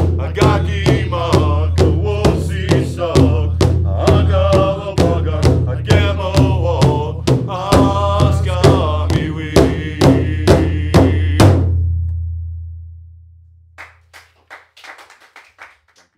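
Powwow drum group singing a grand entry song together over a large drum struck in a steady beat, about two strokes a second. The song ends about eleven and a half seconds in and the drum's low boom dies away, leaving a few faint short sounds near the end.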